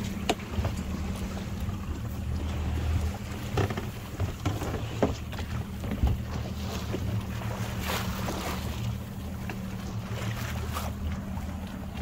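Yamaha 200 outboard motor running steadily with a low hum, with wind on the microphone and scattered short knocks and splashes of water against the boat.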